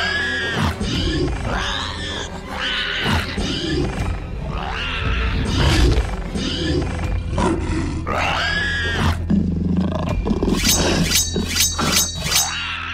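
Dinosaur roar and screech sound effects: a string of separate cries, each rising and falling in pitch, about one every second or two, over steady background music. Near the end comes a quick run of sharp clicks.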